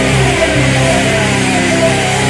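Punk rock band playing live, with distorted electric guitars holding long sustained notes.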